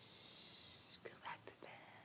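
Faint whispering, beginning with a drawn-out hiss like a 'shh' for about a second, then a few short whispered sounds.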